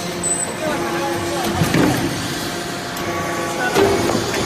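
Hydraulic metal-chip briquetting press running: a steady hum from its hydraulic power unit, with sharp metallic knocks as the ram presses and the briquettes are pushed out. There is a knock about two seconds in and a louder one just before the end.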